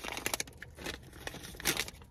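Paper fast-food packaging rustling and crinkling as it is handled, in irregular crackly bursts that are strongest near the start and again near the end.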